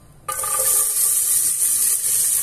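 Chopped onions dropping into hot olive oil in a pressure cooker pan, setting off a loud sizzle that starts suddenly about a quarter second in and goes on steadily as the onions begin to fry.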